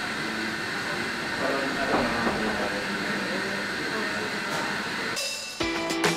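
Steady background hiss and hum of room ambience with faint distant voices. Near the end, acoustic guitar music comes in.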